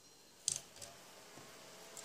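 A sharp click about half a second in, with a smaller click just after, as a desktop PC is switched on. A faint steady whir follows as it powers up.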